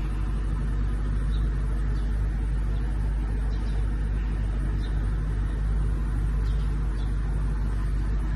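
Parked Mercedes-Benz sedan's engine idling steadily: an even low rumble.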